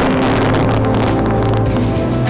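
News-programme intro theme music: a held low note with other sustained tones, and a rushing whoosh dying away in the first half second.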